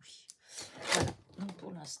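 Paper strips rustling and scraping as they are handled on a craft cutting mat, followed near the end by a woman starting to speak.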